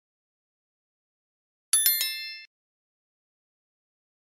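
A short, bright chime sound effect from a subscribe-button animation: three quick notes about two seconds in, ringing out for under a second, with silence around it.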